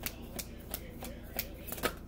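A deck of tarot cards being shuffled by hand: several short, sharp card snaps spaced irregularly, the last near the end.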